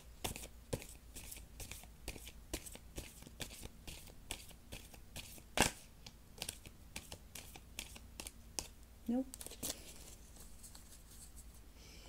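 Tarot cards being shuffled by hand: a run of quick, irregular soft snaps and flicks, with one louder snap about halfway through.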